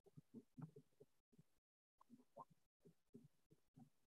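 Near silence: faint, muffled low sounds from the hall come and go in short pieces, cut to dead silence between them as the call's audio gates in and out.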